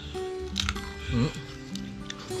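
Crunchy grilled dog-meat skin being chewed: a few sharp crunches under background music with held notes, and a short 'ừ' about a second in.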